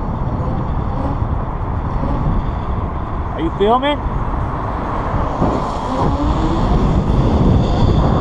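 Wind rushing over the microphone from riding an electric bike at speed on a road, a steady dense noise. About three and a half seconds in there is a short rising vocal sound.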